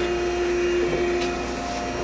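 Okamoto ACC-1632DX hydraulic surface grinder running with its hydraulic unit and grinding-wheel spindle on: a steady whirring hum with a held tone, as the table and cross saddle traverse.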